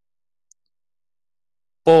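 Silence broken by one faint, short computer mouse click about half a second in; a man's voice starts near the end.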